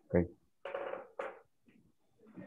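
A few short, unclear voice sounds coming over the video-call line, without clear words, the first a brief falling sound.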